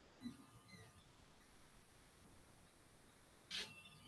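Near silence: faint room tone over a video-call line, with one short faint hiss about three and a half seconds in.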